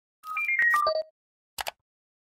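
Short electronic intro sting for a logo animation: a quick run of bright, beep-like notes, stepping mostly downward over about a second, mixed with sharp clicks. Two brief ticks follow about half a second later.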